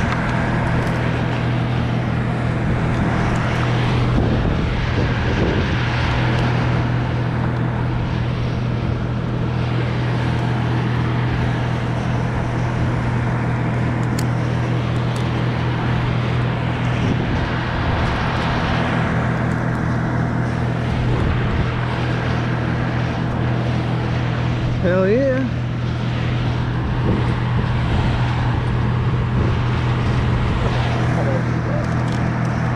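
An engine runs steadily at one constant speed. About 25 seconds in, a brief wavering tone rises over it.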